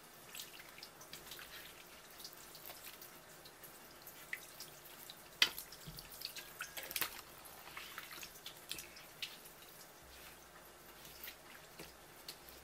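A thin stream of tap water from a faucet hose drips and splashes onto a wooden cutting board and over wet squid, with scattered small clicks and wet handling noises. The loudest is a single sharp click about five and a half seconds in.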